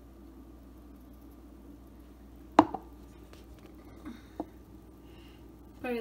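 Plastic blender jar handled against a countertop: one sharp knock about two and a half seconds in, then a few light clicks. A faint steady hum runs underneath.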